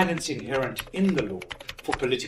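A quick, irregular run of keyboard-typing clicks, with a voice speaking briefly over it.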